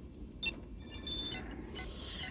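Sci-fi control-console sound effects over a low hum: a sharp click about half a second in, then a quick run of short high electronic beeps and blips, and a falling electronic sweep near the end.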